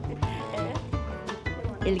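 Background music with held notes under a news report; a woman's narrating voice comes in right at the end.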